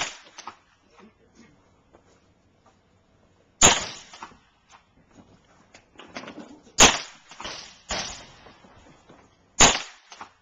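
Hi-Point 9mm carbine fired three single shots, about three seconds apart, each a sharp crack with a short echo. A quieter bang falls between the second and third shots.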